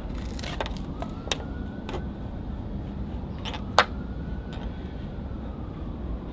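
Braided fishing line sawing through the foam adhesive behind a chrome car emblem on a trunk lid, giving a handful of short, sharp scratchy clicks, the loudest about four seconds in. Under it runs a steady low traffic rumble.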